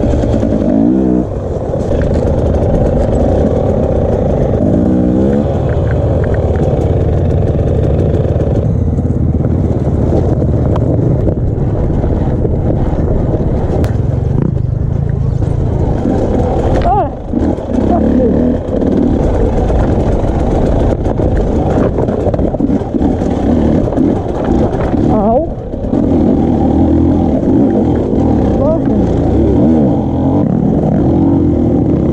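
Off-road motorcycle engine heard from the rider's helmet camera while riding a rough, rocky trail. The revs repeatedly rise and fall as the throttle opens and closes, with a few brief lulls when it is shut off.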